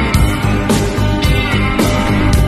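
Rock music with guitar and a steady beat of about two strokes a second, in an instrumental stretch with no singing.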